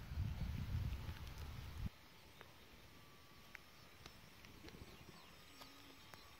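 Low rumble of wind buffeting the microphone for about two seconds, cutting off suddenly, then a quiet outdoor background with a few faint clicks.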